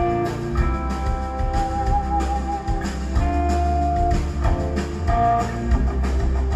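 Live rock band playing: electric guitar holding long notes, one with a wavering vibrato about two seconds in, over bass and drums.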